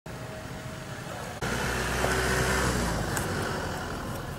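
Motorcycle engines running close by on a road. The sound steps up suddenly about a second and a half in, with a stronger low rumble, then eases off near the end.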